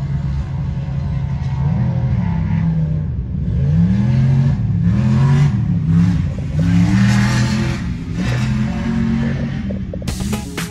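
An off-road vehicle's engine revving up and down again and again, its pitch climbing and dropping in quick repeated swells after a steadier first second or two.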